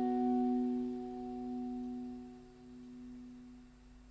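Final strummed guitar chord ringing out at the close of a rock song, its tones slowly fading away.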